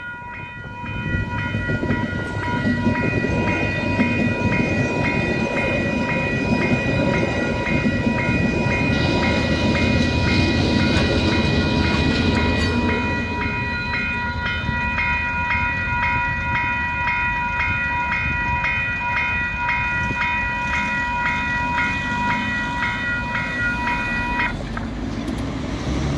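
Level crossing alarm bells ringing in a steady, regular pulse while a train passes over the crossing with a rumble of wheels on rails, loudest about ten to thirteen seconds in. The bells stop suddenly about a second and a half before the end, as the barriers lift.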